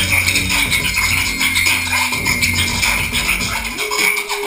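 Hip hop beat played by a DJ on turntables through a club sound system, with a steady rhythm over a bass line that changes note about halfway through.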